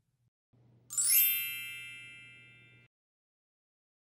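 A single bright chime sound effect about a second in, with a shimmering onset, ringing on several steady tones and fading out over about two seconds.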